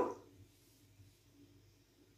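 Near silence: quiet room tone after a spoken word trails off at the very start.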